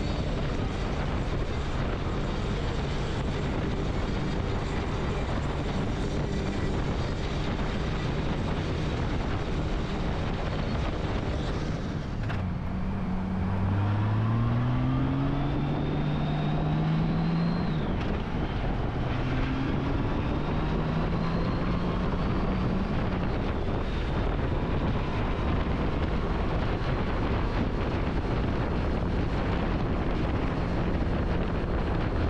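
Steady wind and road rush on a Honda Gold Wing F6B touring motorcycle at highway speed. About halfway through, the flat-six engine note rises as the bike accelerates, drops suddenly at a gear change, then climbs again.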